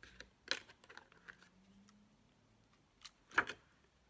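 Light clicks and taps as a metal Crop-A-Dile eyelet punch and a paper card are handled. The loudest knock comes about three and a half seconds in, as the tool is put down on the wooden table.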